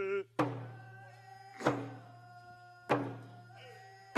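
Hand drum beaten in a slow, even beat, three strikes about a second and a quarter apart, each ringing out and fading before the next.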